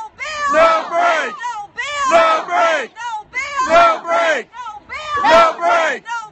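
A woman shouting a rhythmic protest chant with a crowd, the same short phrase repeated about every second and a half.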